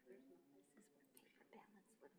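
Near silence: faint, indistinct voices murmuring in a quiet room, with a few light clicks.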